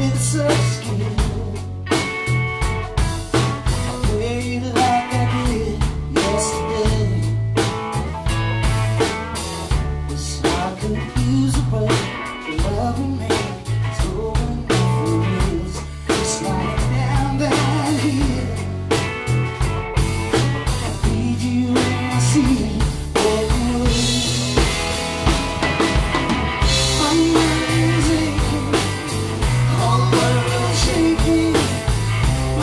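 Live rock band playing a song: drum kit, bass and electric guitar under a man's singing voice, with cymbals growing louder in the last few seconds.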